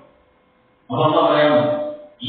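A pause, then about a second in a man's voice delivers one short phrase in a chant-like, intoned way before stopping again.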